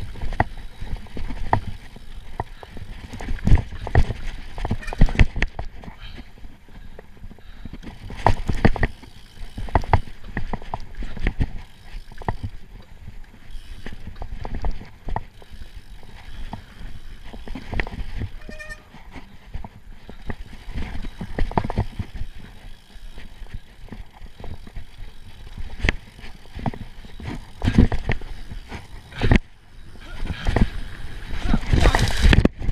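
Giant Trance full-suspension mountain bike ridden fast down a dirt trail: tyres rumbling over the ground with a constant run of irregular knocks and rattles from the bike as it hits roots and bumps, the hardest hits around three to five seconds in and again near the end.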